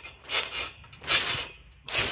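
Trampoline mat rasping and scraping in three short bursts less than a second apart, with faint clinks from the springs, as someone bounces on it with the phone lying on the mat.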